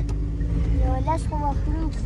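Car engine and road noise heard from inside the cabin: a steady low rumble with a constant engine hum, and faint voices about a second in.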